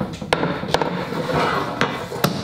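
Long straightedge knocking against timber floorboards as it is rocked over a dip in the floor, three sharp clacks about a second apart: the rocking shows the floor is not flat.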